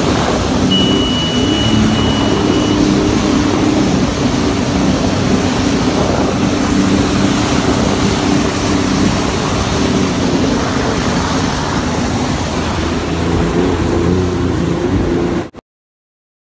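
Jet ski engine running steadily at speed, mixed with rushing water and wind noise on the microphone. The sound cuts off abruptly near the end.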